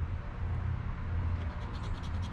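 A coin scraping the coating off a scratch-off lottery ticket in a few faint, short strokes in the second half, over a steady low rumble.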